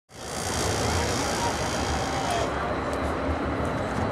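Outdoor ambience: a steady low rumble and hiss, with faint distant voices. The hiss in the upper range eases about two and a half seconds in.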